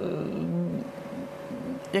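A woman's voice hesitating mid-sentence, soft and drawn out between words, over a faint steady tone.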